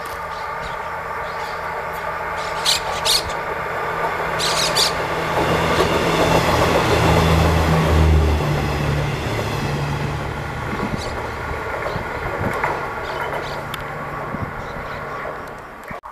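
Renfe Media Distancia regional passenger train approaching and passing close by. Its sound builds to loudest about halfway through, with a low hum that drops in pitch as it goes past, then fades away. There are a few sharp clicks shortly before it arrives.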